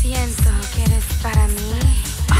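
House music with a steady four-on-the-floor kick drum, about two beats a second. Over it a voice sings two held, bending notes, a short one at the start and a longer one in the second half.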